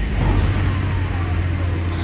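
A steady low bass drone with a faint tone that falls slowly, from the trailer's underscore.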